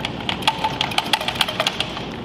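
A fast, irregular run of small plastic clicks and rattles as fingers work the internal wiring connector loose from a ZF 8HP50 transmission case.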